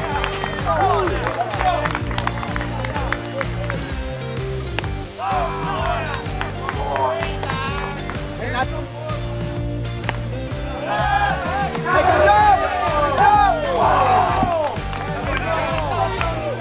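Background music with a singing voice over held bass notes, the vocal line growing louder near the end.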